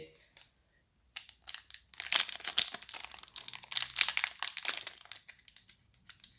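Pokémon TCG Celebrations foil booster-pack wrapper crinkling in the hands as it is worked open at the top crimp; the dense crinkling starts about a second in and stops shortly before the end.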